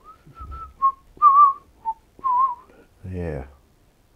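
A man whistling a short tune to himself: about six clear notes around 1 kHz, a couple of them wavering, then a brief low voiced sound near the end.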